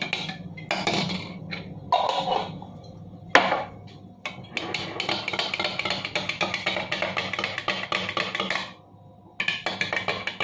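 A metal spoon stirring honey into spinach juice in a glass mug, clinking against the glass. There are a few separate knocks first, then a long run of rapid clinks through the middle.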